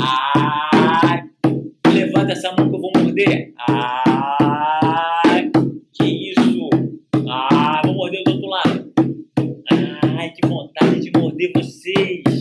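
Background music with a steady beat and a melody that slides in pitch.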